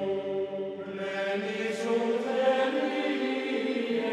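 Gregorian chant: voices singing long, held notes in slow, smooth lines, with a new, fuller phrase starting about a second in.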